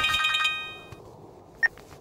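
A mobile phone's electronic ringtone, a rapid trilling tone that fades out within the first second. A single short high beep follows about a second and a half in.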